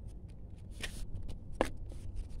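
Two brief, faint rustling scrapes, about a second in and again near the end, over a low steady rumble.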